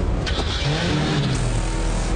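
Film soundtrack: jeep engines as the vehicles drive in, mixed with background music.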